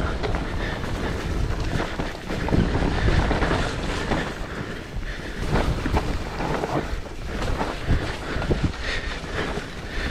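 Mountain bike descending a loose, leaf-covered dirt trail: wind rushing over the camera microphone and tyres rolling over dirt and leaves, with frequent short knocks and rattles from the bike over bumps.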